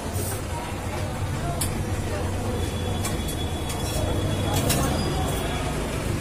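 Busy roadside street ambience: a steady low rumble of traffic under indistinct voices, with a few sharp clicks.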